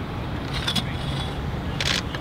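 Outdoor background noise: a steady low rumble, broken by two brief sharp sounds, one about half a second in and a louder one near the end.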